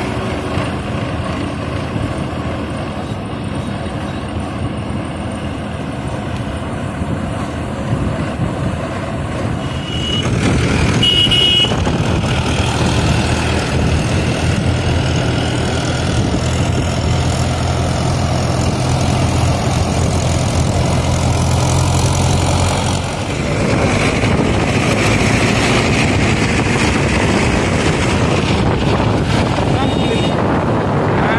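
Diesel tractor engine and road noise heard from a vehicle moving along with the tractor. It gets louder about ten seconds in, where two short high beeps sound. A steady low engine drone holds until a brief dip a little past the middle.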